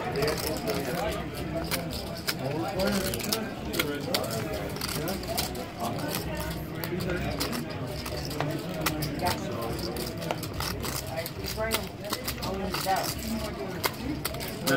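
Background voices of players talking around a poker table, with frequent short sharp clicks of poker chips being handled and stacked.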